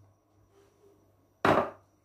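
A small glass bowl set down on a granite countertop with one sharp knock about one and a half seconds in, just after its vinegar is poured out.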